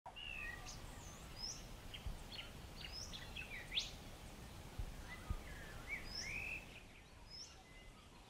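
Faint birds chirping and calling, with short whistles and quick sweeping notes, thinning out near the end, over a low background noise with a few soft thumps.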